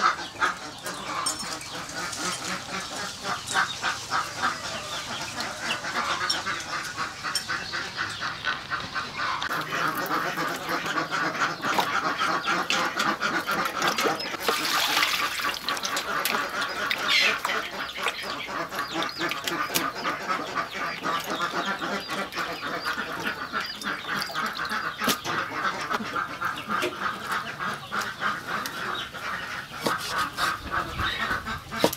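A flock of birds calling continuously in a rapid, dense chatter.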